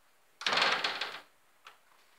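A wooden interior door with a textured glass panel being pulled open: a rapid rattle of many small clicks lasting under a second, followed by a single click.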